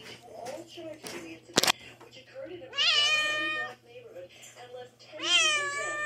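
A tabby kitten meowing twice in high calls that rise and then hold, the second longer and starting near the end. A single sharp click comes about one and a half seconds in.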